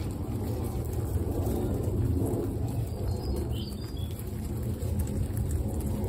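A herd of guinea pigs munching vegetables and shuffling through dry straw: a steady, dense crackle of chewing and rustling, with a few faint high chirps around the middle.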